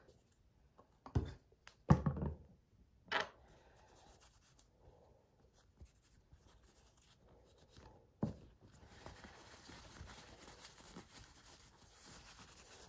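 A few light knocks and a thud as small items are handled on a counter, then soft, steady rubbing as a cotton pad wipes the plastic part of a continuous glucose monitor sensor clean.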